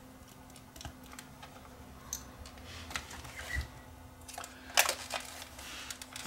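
Small clicks and taps of hands handling a plastic Sony CCD-TR71 camcorder body and a small screwdriver at its screws, with a few louder knocks about five seconds in as the camcorder is turned over.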